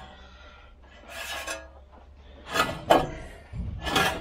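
A shop rag scrubbed over the Land Cruiser's bare front wheel hub in short wipes, cleaning the mating surfaces. There is a sharp knock of metal about three seconds in.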